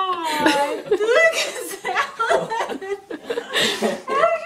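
Excited, emotional laughter and wordless exclamations from a man and a woman, the voices rising and falling in pitch.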